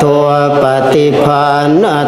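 Thai Theravada Buddhist monks chanting Pali blessing verses in unison, a low, steady drone with short upward pitch glides about once a second.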